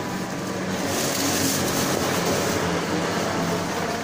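Steady background noise of a busy eatery: a continuous rumble and hiss with faint, indistinct voices under it.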